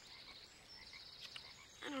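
Faint background chorus of calling frogs, a steady high-pitched chirring. A boy's voice begins right at the end.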